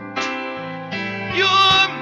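Gospel worship music: a praise team singing with instrumental accompaniment, sustained chords with voices swelling in about halfway through, sung with vibrato.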